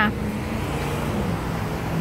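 Steady outdoor background noise with a faint low hum and no distinct events.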